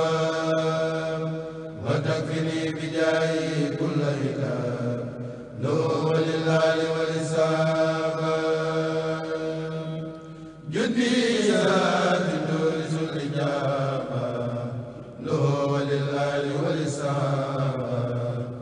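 A Mouride kourel, a group of men, chanting an Arabic khassida together in unison. The chant runs in long phrases of about four to five seconds, each cut by a brief breath before the group comes back in.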